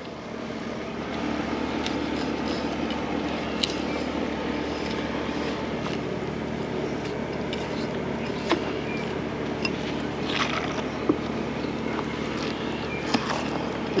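Steady hum of a motor running, with a few faint sharp clicks scattered through it as a fillet knife works shark meat off the skin on a cutting board.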